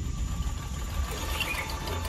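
Motor scooter engine running, a steady low hum.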